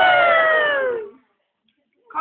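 A young person's long, high-pitched shriek that slowly falls in pitch and breaks off about a second in.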